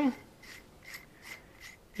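Quiet handling of steel manicure nippers: a run of small clicks and light scraping as the jaws are closed together and worked in the hands.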